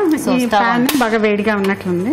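Women's voices talking continuously, with a single sharp clink of a cooking pan being handled about halfway through.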